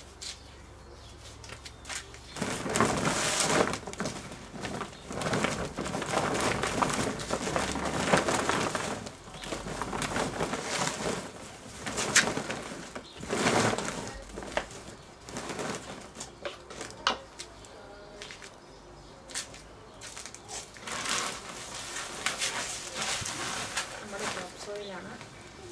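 Blue plastic tarpaulin rustling and crinkling in irregular bursts as it is pulled open and spread out by hand.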